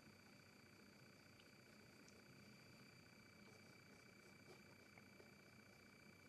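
Near silence: faint room tone with a steady high-pitched hum.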